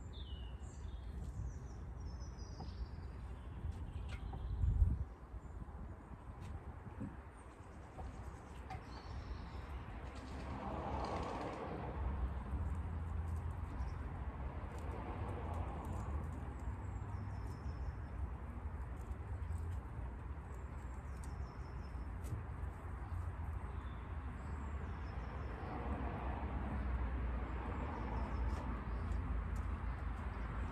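Birds chirping now and then, short high calls scattered through, over a steady low rumble. A single loud thump about five seconds in.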